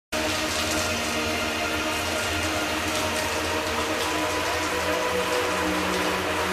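A steady, even hiss like rain or running water, with a faint steady hum beneath it.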